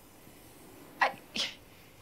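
A woman's short breathy vocal noise in two quick bursts about a second in, over quiet room tone.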